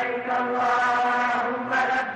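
A chanting voice holding long, steady notes, with a small shift in pitch near the end.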